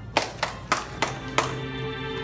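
The recorded backing track of a ballad starting through a PA: five sharp hits about a third of a second apart, the last opening into a sustained, ringing chord.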